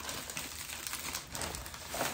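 A thin plastic mailer bag crinkling as it is handled and pulled open: a continuous rustle with small crackles.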